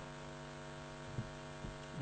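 Steady electrical mains hum from the microphone and public-address system in a pause between speech, with a faint click a little over a second in.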